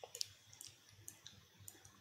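Near silence with a few faint, scattered clicks from working a computer's mouse and keyboard.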